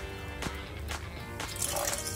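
Plain sparkling mineral water poured from a glass bottle into a glass jar onto yogurt, the splashing picking up near the end. Background music plays throughout.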